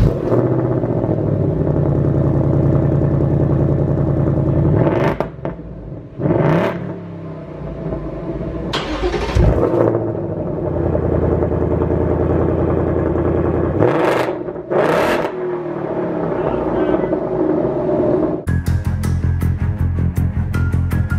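A 2024 Ford Mustang GT's 5.0 V8 cold-starting and running at a high cold-start idle through the stock exhaust, then, about halfway through, a second cold start of the same engine through an H-pipe resonator-delete exhaust. Music with a beat comes in near the end.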